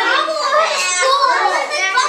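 A group of young children talking and calling out all at once, with several high voices overlapping into loud, continuous chatter.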